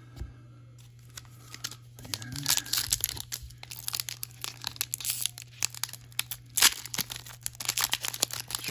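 Foil wrapper of an Upper Deck Artifacts hockey card pack crinkling and tearing as it is ripped open, starting about two seconds in, with a sharp crackle near the end.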